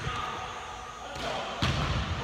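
Basketball bouncing on a hardwood gym floor, with one clear thud about one and a half seconds in, just after a brief high-pitched tone.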